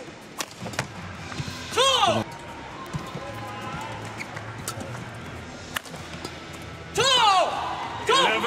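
Badminton rally: sharp cracks of rackets hitting the shuttlecock, and two loud squeaks of players' shoes on the court mat, about two seconds in and near the end, which are the loudest sounds.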